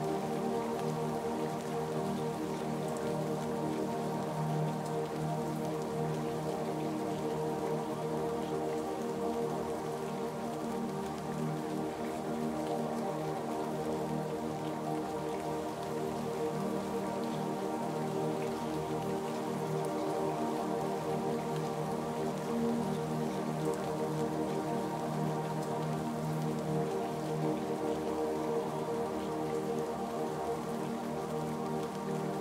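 Steady rainfall with ambient music of slow, held chords underneath, both running evenly without a break.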